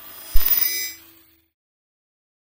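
Outro logo sound effect: a sudden deep thump with a bright, ringing bell-like shimmer about a third of a second in, fading out within a second.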